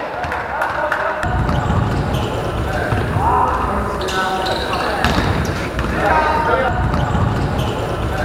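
Live basketball game sound in a sports hall: the ball bouncing on the court amid players' shouts and calls.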